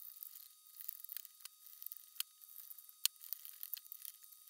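Faint clicks and light scraping of a small screwdriver turning screws into the plastic rim of a lamp housing, with a few sharper ticks about one and a half, two and three seconds in.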